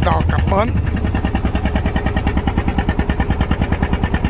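A small wooden boat's engine running under way with a steady, rapid chugging beat.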